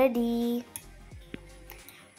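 A woman's voice drawing out a vowel for about half a second, then faint background music.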